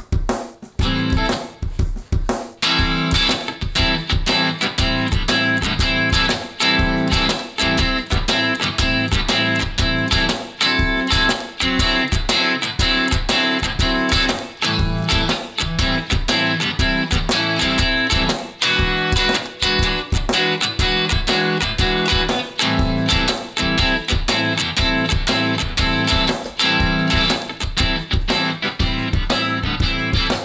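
Kramer electric guitar played in A minor over a repeating drum loop from a looper; the guitar comes in about two and a half seconds in, after a bar of drums alone.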